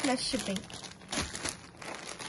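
Folded cotton sarees being lifted and turned over by hand, the fabric rustling in a run of short swishes, with a brief bit of voice at the start.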